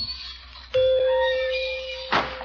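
The tail of a music bridge fades out. About three-quarters of a second in, a bell strikes once and rings on steadily: a shop-door bell sound effect marking someone entering the store.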